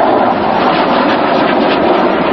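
Jet noise from an F-16 fighter's single turbofan engine as it flies a display pass: a loud, steady rush.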